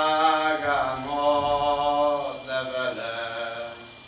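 Young man singing a Hungarian folk song solo and unaccompanied, in long held notes. The phrase slides and steps down in pitch and fades out near the end.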